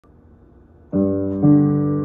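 Upright acoustic piano: after a faint hush, a chord is struck about a second in and left ringing, with further notes added half a second later.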